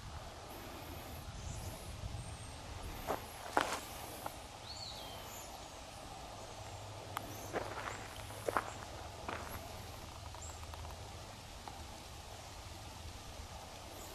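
Quiet outdoor ambience with faint, scattered bird chirps and a handful of short clicks or steps, a few in the first few seconds and a few more in the middle.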